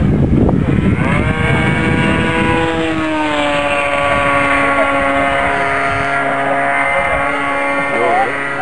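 Engine of a radio-controlled model airplane in flight, a steady buzzing tone that rises slightly and then drops in pitch about three seconds in, holding steady after that. The first second or so is rough, gusty noise.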